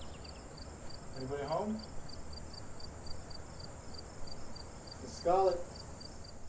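Crickets chirping in a steady, even pulse, about four chirps a second, over a faint continuous hiss. A person's voice makes a short sound with falling pitch about a second and a half in, and a louder short vocal sound about five seconds in.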